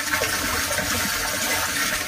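Pumped water pouring from an inlet pipe into a plastic rooftop water tank, splashing steadily onto the surface of the nearly full tank.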